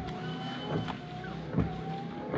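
Citroën Saxo windscreen wipers sweeping over a wet windscreen as the washers are tested: the wiper motor hums steadily, its pitch dipping with each stroke, and the blades give a soft knock about every 0.8 s as they turn back.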